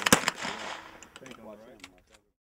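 Sig Sauer P220 Sport .45-calibre pistol firing one shot just after the start, the report echoing and dying away, followed by faint voices.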